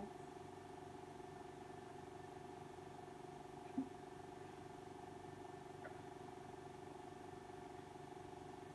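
A faint, steady hum made of several constant low tones, like room or appliance hum. A single short sound comes a little under four seconds in.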